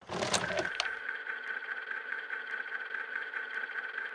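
A sustained, steady high-pitched drone with faint crackling clicks scattered through it, with a brief low rumble in the first second.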